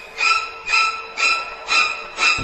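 A short, high-pitched sound repeating evenly about twice a second, a comic sound effect laid over a pause in the music.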